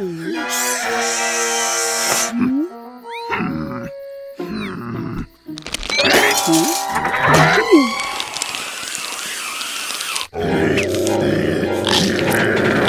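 Cartoon soundtrack: music with comic sound effects and wordless grunts and growls from the characters, including a long noisy stretch in the second half.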